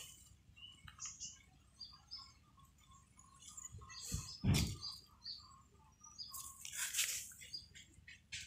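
Faint chirping of small birds: many short, scattered notes throughout. There is a brief rustling noise about halfway through and another near the end.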